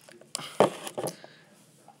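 A few short knocks and handling noises, the loudest about half a second in, then quiet room tone.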